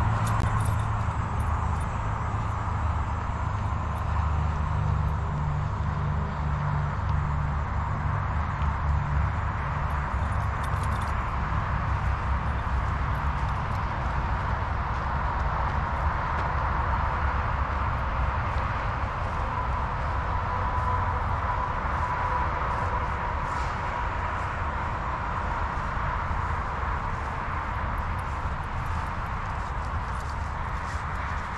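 Steady outdoor background noise, a low rumble under an even hiss, with no distinct events.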